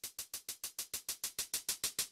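Fast, perfectly even ticking, about eight ticks a second, slowly getting louder: an edited-in ticking sound on the soundtrack that leads straight into the background music.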